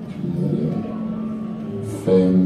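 A steady low drone with a few held tones, and no clear sharp events.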